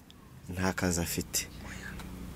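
Quiet, soft-spoken speech: a brief pause, then a short phrase about half a second in.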